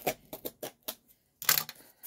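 Hands opening and handling a cardboard shipping box and its paper packing: a string of light clicks and taps, with a louder crackle about one and a half seconds in.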